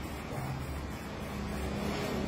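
A steady low mechanical hum, like a motor running, growing slightly louder toward the end.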